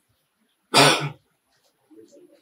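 A man clearing his throat once, loudly and sharply, about three quarters of a second in and lasting about half a second.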